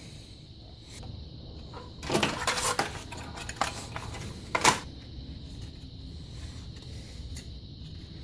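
Plastic knocks and rattles from a Cube 3 PLA filament cartridge being handled, with one sharp click about halfway through.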